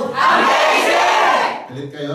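A small group of people shouting together, loud for about a second and a half, then dying away.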